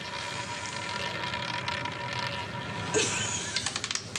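Roulette ball rolling around a spinning roulette wheel with a steady whir, then clattering over the pocket dividers in a run of sharp clicks that spread out as it slows to settle. A short vocal cry comes just before the clicking.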